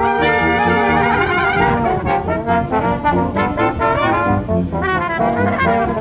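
Brass quintet of two trumpets, French horn, trombone and tuba playing: a chord held for about the first second, then a moving tune over a steady pulsing tuba bass line.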